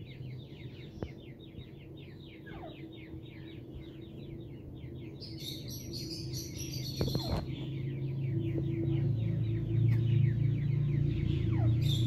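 A bird chirping in a fast, even run of thin high descending chirps, about ten a second, which fades out about two-thirds of the way in. A low steady hum grows louder through the second half and ends as the loudest sound.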